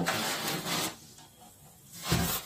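Cardboard scraping and rubbing against cardboard as a smaller box is pulled out of a large shipping carton. The noise lasts about a second, then dies away.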